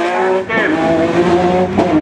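Rally car engine pulling hard past, the revs dropping briefly with a gear change about half a second in, then held high and steady.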